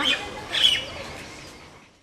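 A bird chirps once, briefly and high, about half a second in, over faint outdoor background that fades away to silence by the end.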